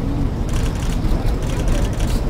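Bursts of rapid camera shutter clicks over a steady low rumble of outdoor street noise.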